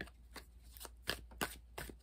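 A deck of tarot cards being shuffled by hand: a run of quick, irregular soft slaps and rustles as the cards are worked through.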